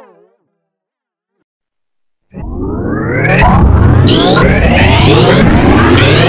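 Electronically warped logo-jingle audio: a warbling synth tone fades out, then after about two seconds of silence a loud, noisy, heavily processed sound cuts in, full of repeated rising sweeps, and grows louder about a second later.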